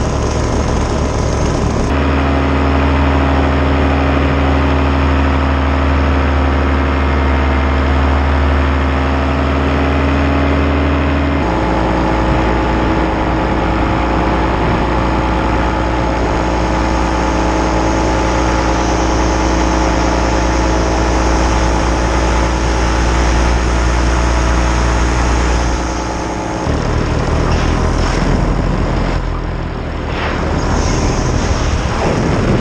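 Paramotor engine and propeller running steadily in flight, a loud even drone. Its pitch steps abruptly a couple of times, and about three and a half seconds from the end it briefly drops in loudness and settles lower.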